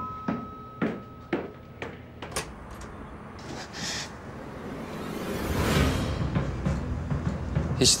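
Footsteps on wooden stairs, about two a second, under the fading tone of a doorbell chime. A door is opened about halfway through, and a rising rush of sound swells near the end.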